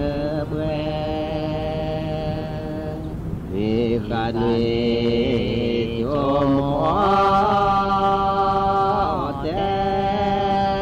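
A slow, chant-like song: long held vocal notes, each lasting a second or more, that slide from one pitch to the next over a steady low drone.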